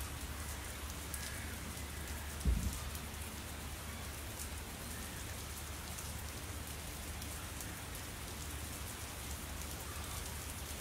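Steady pattering of water, like rain falling, over a low rumble, with one dull thump about two and a half seconds in.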